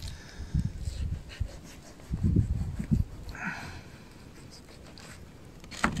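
Quiet handling sounds of a knife slicing a slab of raw pork on a wooden cutting board, with a few soft low knocks in the first three seconds.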